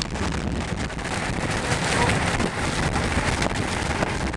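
Steady rush of storm wind and rain beating on a moving car, with road noise, heard from inside the cabin.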